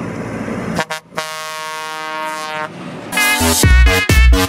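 New Holland T7 tractor's horn giving one long steady blast of about a second and a half. Loud dance music cuts back in near the end.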